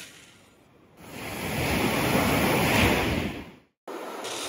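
A metal ball scoop being pushed and turned into coarse wet beach sand: a gritty rushing crunch that swells over about two seconds and then cuts off short.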